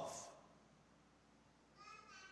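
Near silence: church room tone, with a faint high-pitched voice starting near the end.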